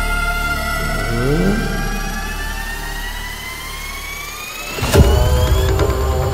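Suspense film score: a low drone under several tones that climb slowly for about four seconds, then a sudden loud hit about five seconds in, followed by heavy low drum beats.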